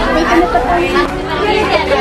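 Speech only: several voices of a group of students talking over one another.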